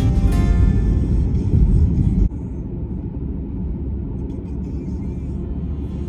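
Low, steady rumble of a car driving on a highway, heard from inside the cabin; the level drops suddenly a little over two seconds in.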